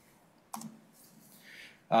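A single sharp click about half a second in, followed by faint room noise and a soft hiss near the end.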